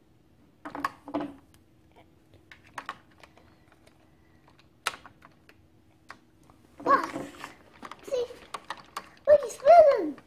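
Hard plastic toy parts clicking and knocking as a playset swing ride and figure are handled, in scattered light clicks with one sharper click about five seconds in.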